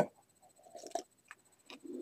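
A pause in a man's speech, filled with faint mouth and throat noises and a couple of soft clicks. Near the end a low throat sound begins a cough.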